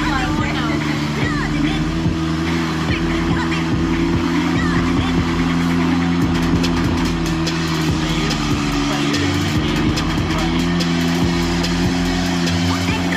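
Tractor engine running hard under load as it hauls a loaded trolley through mud, its note steady, then shifting about three-quarters of the way through. Music and voices play over it.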